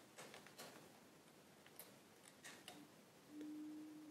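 Faint, sparse crackles of stiff Stark origami paper being pinched and creased by hand, a handful of short crisp clicks. Near the end a faint steady low tone comes in.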